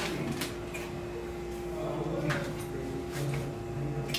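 Indistinct low voices with a few scattered knocks and clatters over a steady hum.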